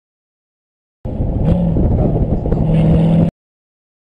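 Car engine running loud and steady, starting abruptly about a second in and cutting off suddenly a little over two seconds later.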